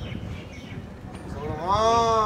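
One long drawn-out vocal call starting about a second and a half in, its pitch rising then falling.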